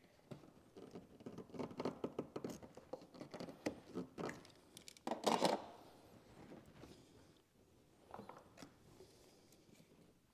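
Hands working rubber heater-core hoses off their fittings, giving scattered small clicks, scrapes and rubs, with a louder rustle about five seconds in and a few faint clicks near the end.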